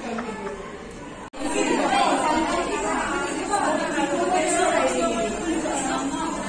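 A group of young women chattering at once in a classroom, many overlapping voices with no single speaker clear. A sudden brief break about a second in, after which the chatter is louder.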